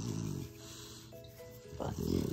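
Boston terrier making a low, rattling grunt as its neck is scratched, ending about half a second in. Soft background music plays under it.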